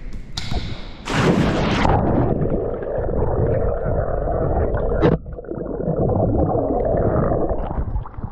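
A person plunging into a swimming pool: a splash about a second in, then muffled churning and bubbling heard from underwater, with a sharp knock about five seconds in.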